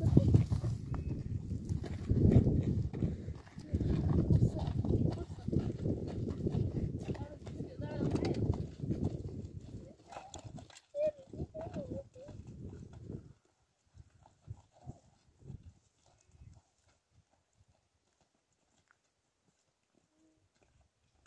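Voices of children and a woman over close footsteps and knocks on stony ground, going almost silent about thirteen seconds in.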